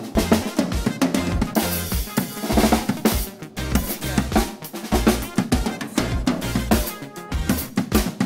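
Acoustic drum kit played with sticks: a busy improvised run of bass drum, snare and tom hits under ringing cymbals.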